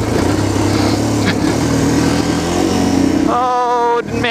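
Yamaha TT-R230's single-cylinder four-stroke engine running at a steady, low engine speed. A steady higher-pitched tone comes in near the end.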